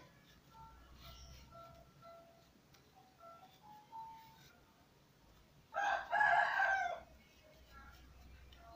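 Quiet background music of single held melody notes, broken about six seconds in by a loud pitched animal call lasting just over a second.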